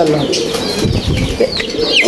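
Domestic fancy pigeons cooing, with a brief flutter of wings about a second in and a few high chirps near the end.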